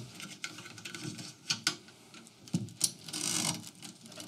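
Handling noise of a braided-sleeve cable being pulled out of the channel in an aluminium extrusion rail: scattered small clicks and scrapes, with a longer rustle about three seconds in.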